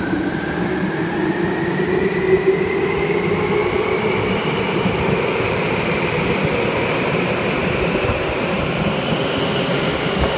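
Tokyu 8590 series electric train pulling out of an underground station, its traction motor whine climbing steadily in pitch as it gathers speed over the rumble of wheels on rail.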